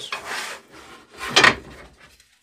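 Thin wooden strips sliding and rubbing across a workbench top as they are handled, with a louder scrape about halfway through.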